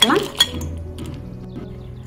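Roasted cashews poured into a steel mixer-grinder jar, clinking against the metal: a couple of sharp clicks in the first half second, then a quieter rattle.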